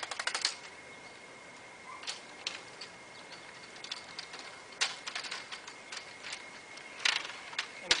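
Wooden parts of a folding plein-air easel tapping and knocking together as it is broken down, an irregular run of sharp clicks with louder knocks about five seconds in and about seven seconds in.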